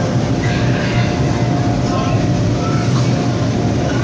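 Steady low drone of the electric blower fans that keep the inflatable bounce house and slide inflated.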